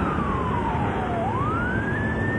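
Fire engine siren wailing: its pitch falls slowly for about a second, then sweeps back up, over a steady rumble.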